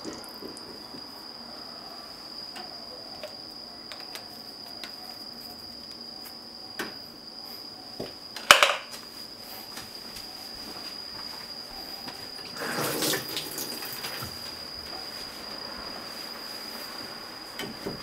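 Kitchen handling sounds as ketchup is squeezed from a plastic squeeze bottle onto pizza dough in a frying pan: small clicks, one sharp knock about halfway through as the bottle is handled and put down, and a short rustling scrape a few seconds later. A steady high-pitched whine runs underneath.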